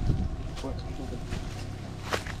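Low, steady rumble of wind on the microphone, with faint voices in the background.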